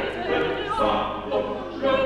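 Several operatic voices singing together in ensemble with piano accompaniment, moving from note to note about every half second.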